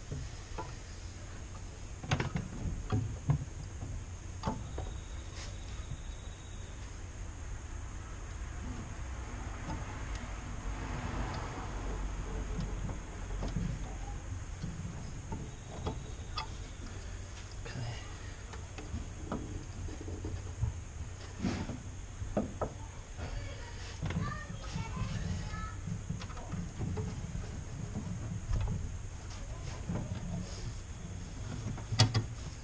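Scattered clicks and knocks of metal on metal as a brake master cylinder is handled and jiggled into its mounting in a car's engine bay, over a low steady rumble.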